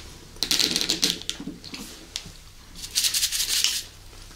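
Two bursts of rapid clicking and rattling from plastic Big Dipper candy bottles being picked up and handled, the first shortly after the start and the second about three seconds in.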